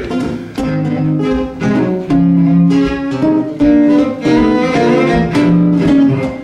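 Cello and acoustic guitar playing a song's instrumental introduction. Long bowed cello notes sound over guitar chords plucked on a steady beat.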